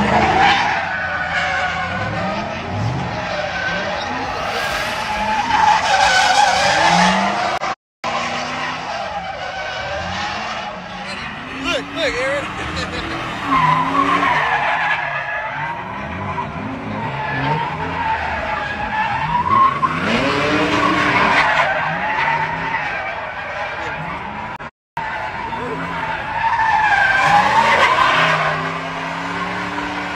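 A Ford Mustang's engine revving up and down while its rear tyres squeal in sustained, wavering screeches as it spins donuts, with crowd voices around it. The sound breaks off for an instant twice, about a third of the way in and again near the end.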